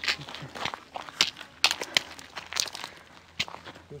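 Footsteps on a gravel track, about two steps a second.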